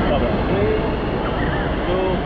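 Busy indoor swimming pool: a steady wash of water noise with voices and children's calls echoing across the hall.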